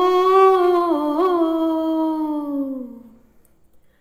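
A woman singing one long held note of a Malayalam film folk song, unaccompanied. The note wavers briefly just over a second in, then sinks slightly and fades away about three seconds in.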